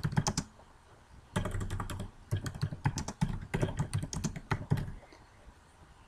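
Typing on a computer keyboard: several quick runs of key clicks with short pauses between them, stopping about five seconds in.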